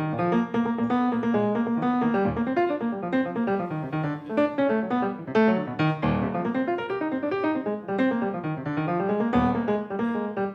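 Live acoustic piano playing a stream of jazz chords and melody, notes struck and changing several times a second.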